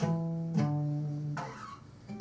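Acoustic guitar: a note or chord plucked at the start and another about half a second later, both ringing and fading, then a brief scratch of fingers on the strings. The notes sit around E and demonstrate E minor, the relative minor of G major, a minor third down.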